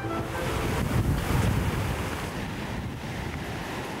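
Hurricane wind: a rushing storm noise with a deep rumble, swelling about a second in and easing off toward the end.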